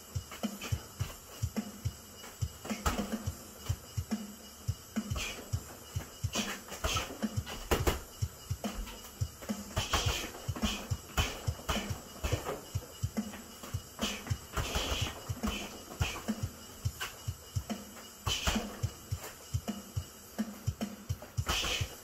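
Boxing workout: a quick, uneven run of gloved punches landing on a punching bag and footwork on a matted floor, with a few sharp hissing exhales. Music plays underneath.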